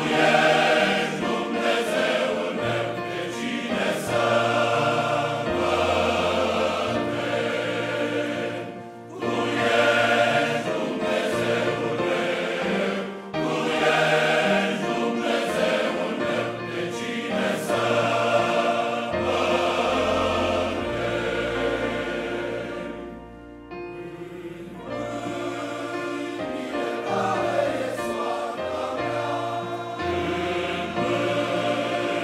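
Large men's choir singing a hymn in Romanian, phrase after phrase with short breaks for breath; the singing sinks to a quieter passage a little past the middle and then swells again.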